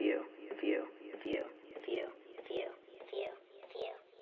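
A short, telephone-thin vocal snippet looped about every two-thirds of a second like a stutter, fading out steadily, with a few faint clicks among the repeats: a chopped voice sample closing out a hip-hop beat.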